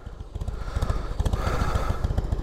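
2001 Harley-Davidson Heritage Softail's air-cooled V-twin idling with an uneven, lumpy beat.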